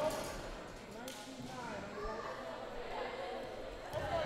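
Faint, distant chatter of players and spectators in a school gym, with a light knock about a second in.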